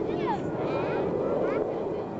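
Jet aircraft engine noise, a steady rushing sound, from an F-117 Nighthawk flying overhead, with faint voices over it.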